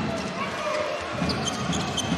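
A handball being bounced on the indoor court floor, with steady crowd noise from the arena.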